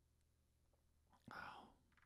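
Near silence, then a single breathy, half-whispered "wow" from a voice about a second and a quarter in.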